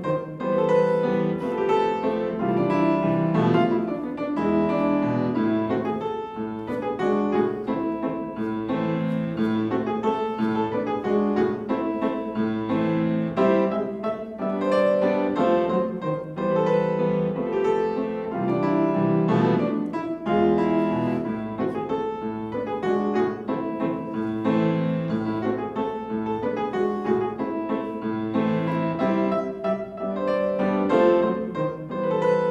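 Grand piano played live as ballet barre accompaniment: classical-style music with an even pulse and no pauses.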